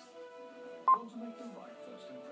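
Icom ID-E880 D-Star mobile radio giving one short beep about a second in, over faint steady tones of several pitches from its speaker as a signal comes in through the repeater.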